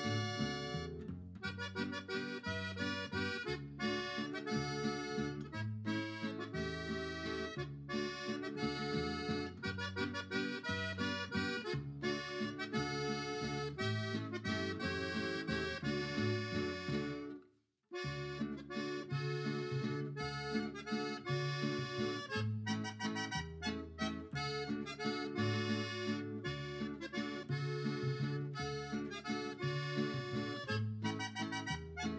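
Instrumental background music led by accordion, with a steady beat, cutting out for a moment just over halfway through before the music carries on.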